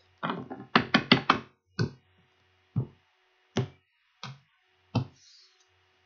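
A tarot card deck being shuffled and handled: a quick run of sharp card snaps, then five single taps spaced roughly a second apart.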